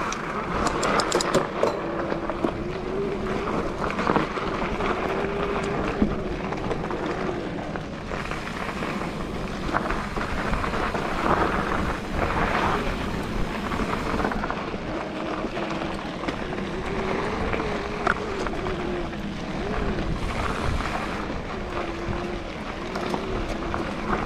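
Mountain bike running fast down a dirt and gravel trail: a steady rush of tyre noise and wind on the microphone, with occasional knocks and rattles from the bike over rough ground. A thin whine rises and falls in pitch throughout.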